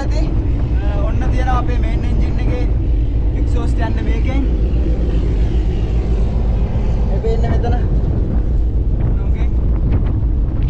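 Loud, steady low rumble of a ship's engine exhaust and machinery inside the funnel casing, with a man's voice speaking in short bursts over it.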